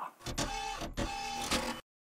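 Short non-speech transition sound effect between news segments: two matching bursts about three quarters of a second apart, each with a brief held tone.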